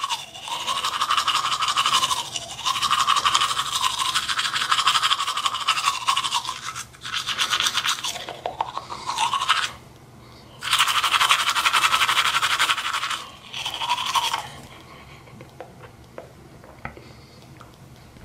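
Toothbrush scrubbing teeth in long stretches of rapid strokes, with a brief pause about ten seconds in. It stops for good about fourteen seconds in.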